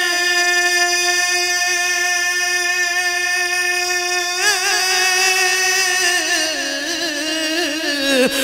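A man's voice singing an Urdu naat, holding one long note for about four seconds, then breaking into a wavering ornament and stepping down in pitch near the end.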